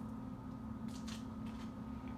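A quiet kitchen with a steady low hum, and a couple of faint rustles about a second in.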